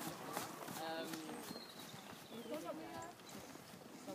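Hoofbeats of a grey horse trotting on a sand arena surface, with faint voices nearby.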